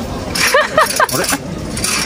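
A metal omikuji box being shaken and tipped, the wooden fortune sticks inside rattling against its sides. A brief voice sounds about half a second in.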